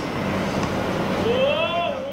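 Steady outdoor ambient noise from an open practice ground, with a low hum underneath. Near the end a single drawn-out call rises and then falls in pitch.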